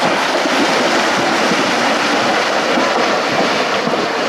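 Several Camargue horses wading through a shallow river, their legs churning the water in a continuous, loud splashing.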